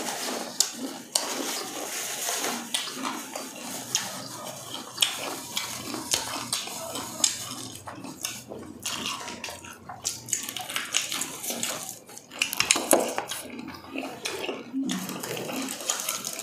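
Close-miked eating of crispy fried chicken: many short crunches and crackles of breading with wet chewing.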